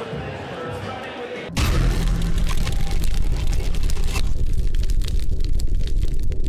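Hall background of voices and music, abruptly replaced about a second and a half in by a loud outro logo sting: a deep bass rumble with whooshing, crackling high noise that thins out about four seconds in.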